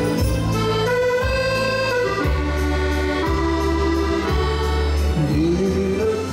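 Instrumental break of a waltz song played on a chromatic button accordion: a melody of sustained, reedy notes and chords over a bass line that changes about once a second.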